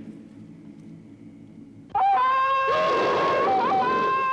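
Tarzan yell: a man's long yodelling jungle call that bursts in suddenly about two seconds in. It holds one high pitch, with a quick yodel break in the middle. Before it there is only a faint low hum.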